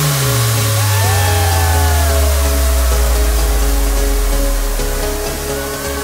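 Electronic dance music from a live DJ set, in a breakdown with no beat. A deep bass note slides slowly down in pitch over about five seconds, and higher synth tones glide downward from about a second in.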